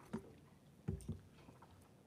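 Quiet meeting-room tone with a few brief, faint knocks; the loudest comes about a second in.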